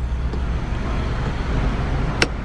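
Steady low rumble and hiss of a car idling, heard from inside the cabin.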